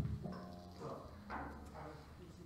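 Stage noise of a band setting up: a low amplified boom fading out at the start, then faint scattered knocks and handling sounds with a brief pitched note.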